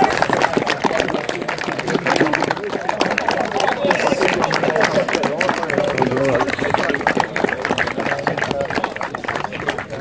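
Scattered hand clapping from a small crowd outdoors, with several people talking over it.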